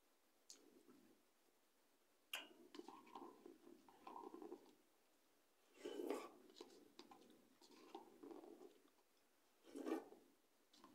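A person eating noodles with the mouth close to the microphone. A sharp click a little over two seconds in leads into about two seconds of chewing, a louder slurp comes around six seconds in, and another slurp comes near the end.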